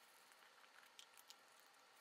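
Near silence, with a few faint light clicks and rustles from a small jewellery box and its ribbon being handled.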